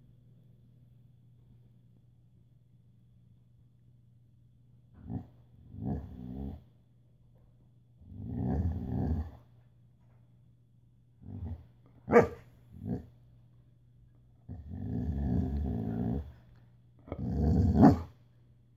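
A dog growling and grumbling in a string of short vocal bursts, starting about five seconds in, with one short sharp bark-like call about two-thirds of the way through. It is the dog 'talking', pestering to be given the food on the table.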